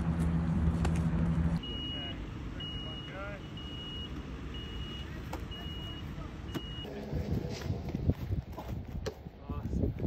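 Outdoor field sound: a steady low hum for the first second and a half, then six short high electronic beeps about a second apart. Faint voices and a few sharp knocks follow near the end.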